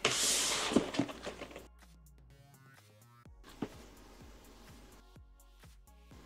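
A short rushing noise with a couple of light knocks, lasting about a second and a half, then faint background music for the rest.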